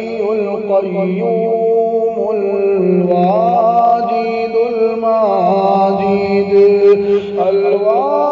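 A man chanting the Arabic names of Allah in long, drawn-out melodic phrases over a steady low drone.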